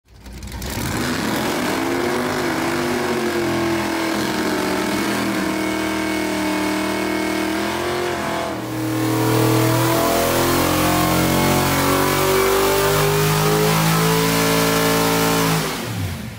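Small-block Mopar V8 revving hard at high rpm in a smoky burnout, with its pitch wavering. About eight and a half seconds in, the sound cuts to a second run where the revs climb in steps.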